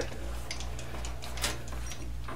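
A couple of short metallic clicks about a second apart as a tool holder is handled on a lathe's quick-change tool post, over a steady low hum.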